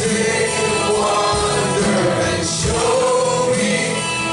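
Live contemporary worship music: several voices singing together over acoustic guitar and drums.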